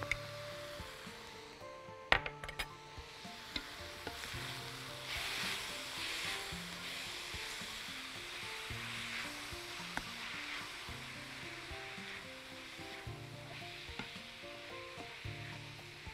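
Minced meat and onions sizzling as they brown in a hot pan, stirred with a spoon, with a couple of sharp clicks about two seconds in. Soft background music plays underneath.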